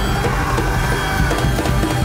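Live music from a large folk-style ensemble on stage: violins, double bass, guitars, drum kit and hand drums playing together with a steady beat.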